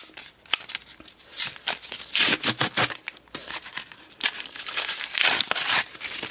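Plastic and cardboard blister packaging of a Pokémon card pack being torn and crinkled open by hand. It is a run of small crackles and clicks, with two longer crinkling tears, about two seconds in and about five seconds in.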